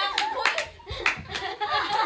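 Several handclaps in quick succession, mostly in the first half-second with a few more after a second, amid excited voices of a group of girls.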